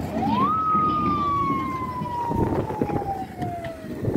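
A siren giving a single wail: the pitch rises quickly in the first half second, then slides slowly and steadily down for about three seconds, cutting off near the end.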